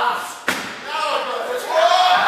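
A wrestler's body slamming onto the wrestling ring mat: one sharp impact about half a second in, followed by shouting voices.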